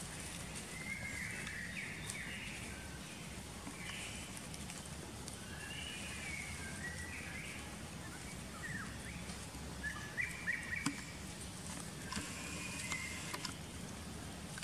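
Short, high chirping calls repeating at irregular intervals over a steady low background hum. There is a cluster of louder chirps and a sharp click about ten to eleven seconds in.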